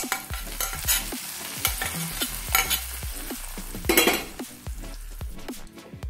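Hot-oil tempering of small onions and curry leaves sizzling as it is poured from a small steel pan into fish curry, with a spoon scraping and clicking against the pan. A louder burst comes about four seconds in, and it quietens near the end.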